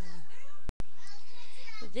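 A young woman's voice singing a cappella: a held note tails off, her voice carries on softly, the sound cuts out completely for a split second with a click at each edge, and the next sung phrase begins near the end.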